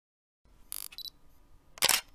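DSLR camera sounds: a short mechanical burst, a brief high beep, then a loud sharp shutter release near the end.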